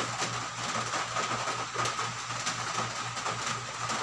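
Soapy hands rubbing together, backs of the fingers worked against the opposite palms, giving a steady, irregular rubbing noise over a constant low hum.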